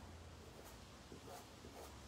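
Near silence: faint room tone with a few soft scratches of a paintbrush being worked over fabric.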